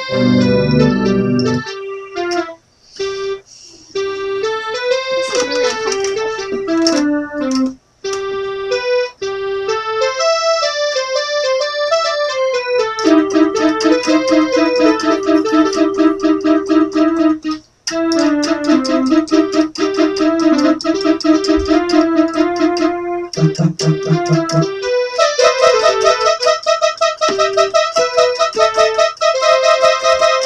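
Portable electronic keyboard in a piano voice, played by two people side by side: a simple melody with repeated notes, stopping briefly three times.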